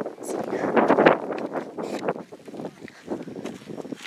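Wind buffeting the microphone, loudest about a second in, with footsteps on dry, gravelly ground.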